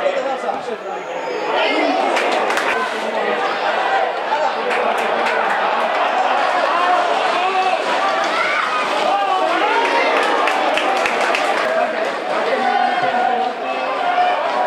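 Many voices talking and shouting at once, the crowd chatter of spectators at a football match, with a few sharp knocks mixed in.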